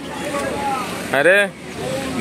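Steady road traffic noise from a busy city street, with a man's short exclamation ("arre") a little after a second in.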